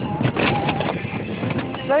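Golf cart driving over a rocky trail, a jumble of knocks and rattles over the running noise, with faint voices behind.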